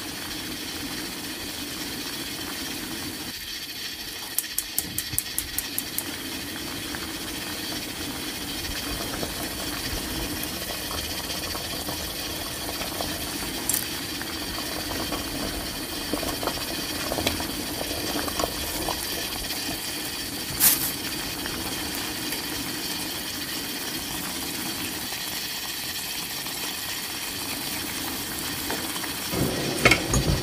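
Pot of napa cabbage soup at a rolling boil: steady bubbling and hissing of the broth. A quick run of about seven small clicks comes around four to six seconds in, and single sharp ticks come later.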